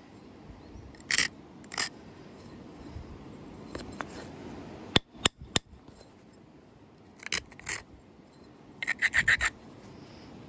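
Short rubbing strokes of an abrader along the edge of a large flint preform, grinding the edge before flakes are struck: two strokes about a second in, two more after seven seconds, and a quick run of about six near the end. Three sharp clicks come about halfway through.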